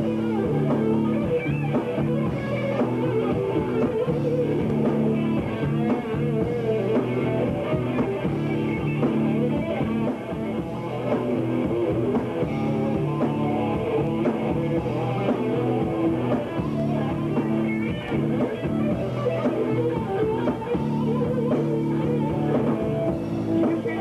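Live rock band playing: electric guitar and bass guitar over a drum kit, a steady, dense band sound.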